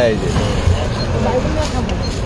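A voice trailing off at the start, then faint talking over a steady low rumble of background noise.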